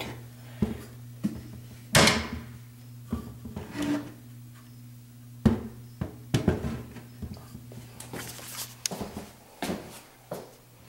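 Scattered wooden knocks and clicks as a hand grips and turns the turned wooden side handle of a small painted cabinet, with the sharpest knock about two seconds in and another about five and a half seconds in.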